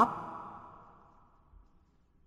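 The end of a man's spoken phrase trailing off into a soft out-breath that fades away within the first second, followed by near silence.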